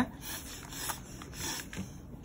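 Brown paper bag rubbing and sliding on a tabletop as it is handled and turned, with a few faint taps.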